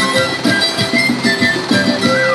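Live music from a street band, with plucked strings such as a guitar over a steady beat, heard in the open square; the group is taken for a Bolivian band playing its music.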